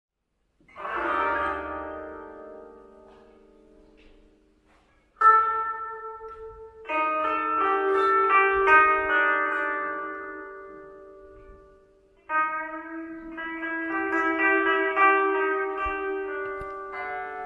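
Koto, the Japanese long zither, plucked in chords and runs whose notes ring on and slowly fade. After a brief silence the first chord comes about a second in, with new phrases entering around five, seven and twelve seconds in.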